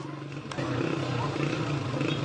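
A person crying out, the voice wavering, over a steady low hum, with one sharp crack about half a second in.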